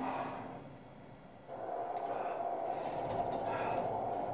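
A hard, breathy exhale of an exhausted exerciser fading out, then about one and a half seconds in the electric motor of an ARX leg press machine starts up and runs steadily with a whine, driving the foot platform back to its start position.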